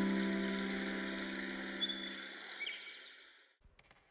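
A held piano chord dying away, with a few short bird chirps over a soft background hiss of forest ambience; the chord, hiss and chirps all fade to silence near the end.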